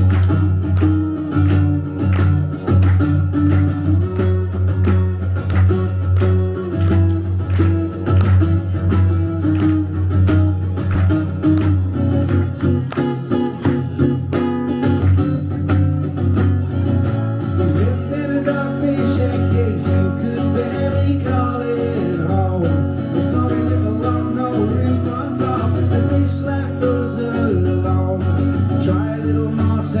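Acoustic guitar strummed in a steady rhythm, playing a song's instrumental intro live through a PA.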